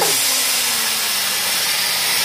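Loud, steady hiss of compressed air from a kiddie helicopter ride's pneumatic lift, with a faint low hum beneath.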